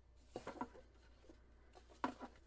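Near silence with room tone, and a faint, brief rustle of paper sheets being handled about half a second in.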